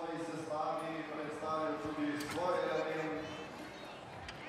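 Faint speech in the background, a man's voice talking in short phrases.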